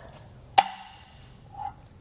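A single sharp metallic click about half a second in, ringing briefly, as the hitch bike rack's fold-pin clip is handled.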